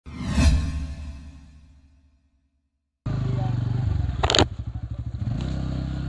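Short intro sound effect: a loud hit that fades away over about two seconds, followed by a brief silence. From about three seconds in, a Bajaj Pulsar P150's single-cylinder engine runs as the motorcycle is ridden, with a short sharp burst of noise about a second later.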